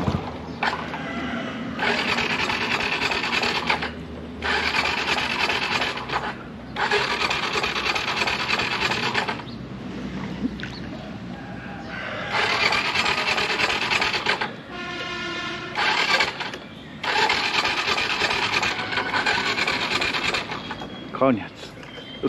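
Motor scooter riding through a flooded, muddy road, its wheels churning and spraying the brown water: a rough rushing noise in surges of a couple of seconds with short lulls between, as the throttle is worked on the slippery ground.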